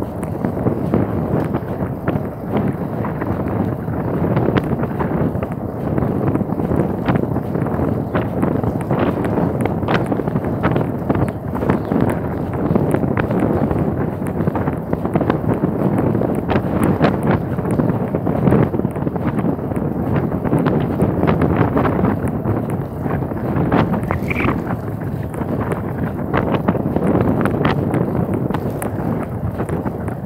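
Wind buffeting the microphone of a camera riding on a moving bicycle: a loud, continuous rumble, with frequent irregular clicks and knocks from the ride over the road.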